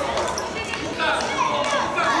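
Futsal game in a sports hall: children on court and spectators shouting and calling over one another, with the ball knocking on the hard floor, all in the hall's reverberation.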